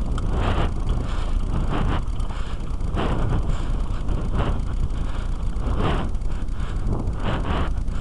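Wind buffeting a helmet camera's microphone while riding a mountain bike over dirt, a steady low rumble with rushes of hiss every second or so, along with tyre noise on the loose ground.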